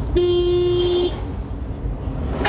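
A vehicle horn blows once, a steady tone lasting about a second, over the low rumble of road noise heard from inside a moving car.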